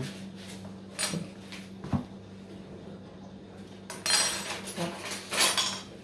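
Hands working at a boiled balut (fertilised duck egg) sitting in an egg cup: two sharp clinks of tableware about a second apart, then about two seconds of crackling and rustling of eggshell and paper tissue.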